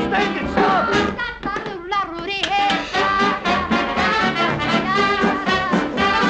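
Swing band music with brass playing a lively, rhythmic tune, with a few sliding notes about two seconds in.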